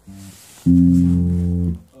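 Electric bass guitar plucking a short, quiet note, then a loud low note held for about a second before it is cut off; the note is the F the lesson is working on.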